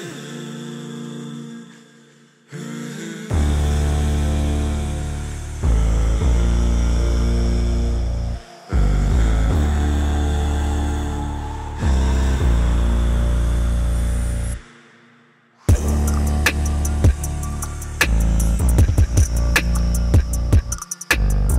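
A beat made entirely from processed recordings of one person's voice. Soft hummed vocal chords give way to deep, sustained vocal bass chords in long blocks. After a brief drop-out near the end, sharp voice-made percussion hits come in with a steady rhythm.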